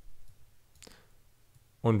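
Faint computer mouse click, the clearest one a little under a second in, as a software module is dropped onto the canvas.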